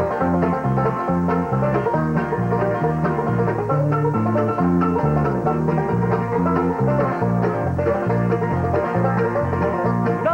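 Bluegrass band playing an instrumental passage, banjo out front over acoustic guitar, mandolin and a stepping bass line.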